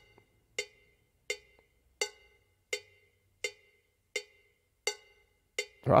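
GarageBand iOS Latin cowbell played solo: single strikes on an even beat, about three every two seconds, each a short bright clank. The full song mix comes in right at the end.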